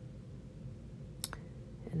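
Two quick small clicks a little past halfway, from hands handling craft supplies (an ink pad and a paintbrush) on a tabletop, over a steady low hum.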